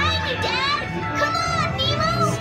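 High children's voices calling out in quick, rising and falling cries over background music.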